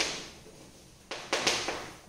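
Chalk scratching on a blackboard as a word is written: two short, scratchy strokes a little past a second in, the second sharper.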